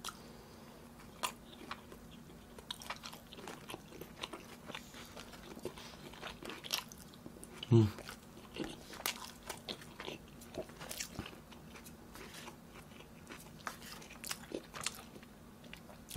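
Close-miked chewing of galbi (Korean short-rib meat): many small wet clicks and smacks of the mouth, with a short hummed 'mm' about eight seconds in.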